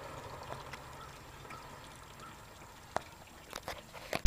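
Faint steady outdoor background noise, with a sharp click about three seconds in and several quick clicks of camera handling near the end as the camera is tilted down.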